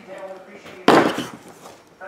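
A single sharp knock about a second in, dying away over about half a second, the sound of something hard striking a tabletop or box.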